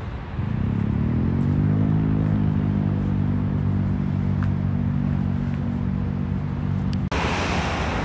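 A motor engine running steadily with a low hum, its pitch rising a little in the first second or two and then holding. It breaks off abruptly near the end, replaced by a louder even street traffic noise.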